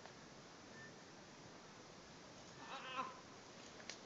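Near silence, broken about three seconds in by a brief, faint wavering engine note: a trail motorcycle revving in the distance as it approaches.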